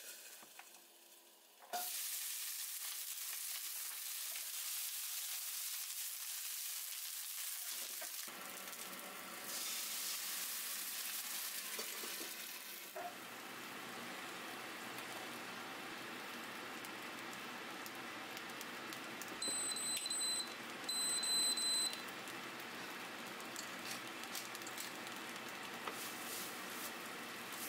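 Broccoli hitting hot oil in a frying pan with a sudden loud sizzle about two seconds in, then frying steadily as it is stir-fried. Two short electronic beeps sound a little past the middle.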